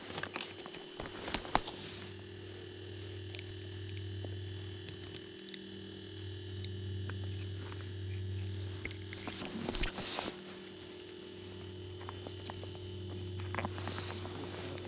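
Steady low hum with faint scattered clicks and rustles as a hook is worked out of a trout's mouth with a hook remover.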